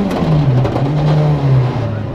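Rally car engine heard inside the cabin, its note falling as the car slows for a tight junction: the pitch drops about half a second in, rises again as a lower gear is taken, holds, then drops once more near the end.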